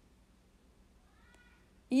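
Near quiet, with one faint, short animal call about halfway through, its pitch rising then falling.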